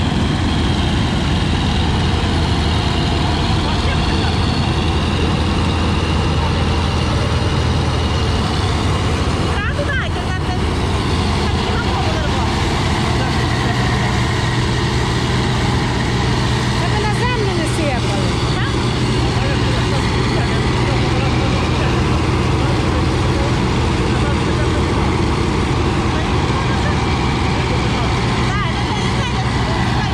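Massey Ferguson MF 487 combine harvester running steadily at working speed, its engine note shifting slightly higher about halfway through.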